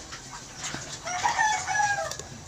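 A rooster crowing: one long call that begins just before the halfway point and holds to the end.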